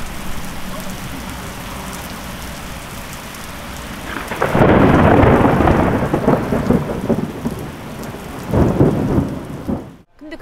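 Heavy rain pouring down steadily on a wet street. A loud roll of thunder comes in about four and a half seconds in and lasts a couple of seconds, and a second, shorter thunderclap follows near the end.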